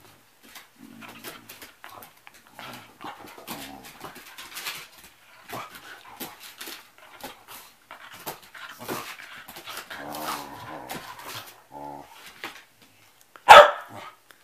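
Two dogs, a Shetland sheepdog and a black dog, play-fighting and mouthing each other, with a steady run of short vocal noises and one loud bark just before the end.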